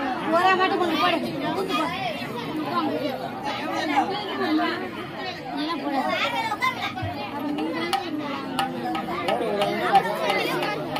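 Many voices talking at once: an overlapping babble of people's chatter with no one voice standing out.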